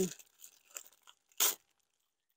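Paper and plastic packaging being handled: faint rustling, then one short, sharp crinkle a little past the middle.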